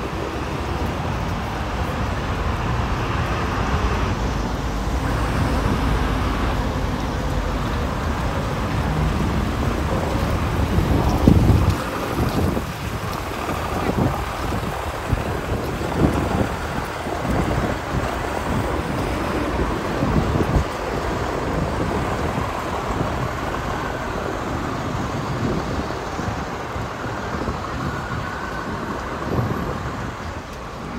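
City traffic ambience: a steady wash of cars passing on the road beside the embankment, with some low wind rumble on the microphone. A louder low rumble swells about eleven seconds in.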